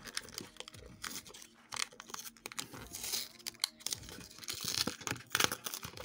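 Cardboard packaging being torn and peeled open by hand: irregular tearing and crinkling with scattered small clicks, busier about halfway through and again near the end. The package is stiff and hard to open.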